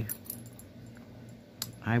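Faint rustling and a few light clicks from stitching fabric being handled, with one sharper click about one and a half seconds in.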